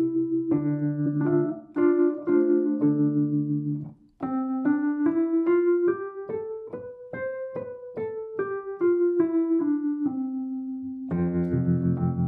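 Wurlitzer 214VA electric piano, its struck steel reeds played through its own amplifier. Held chords come first, then a short break about four seconds in. After that a melody climbs and comes back down over quick, even repeated notes, and a fresh chord is struck near the end.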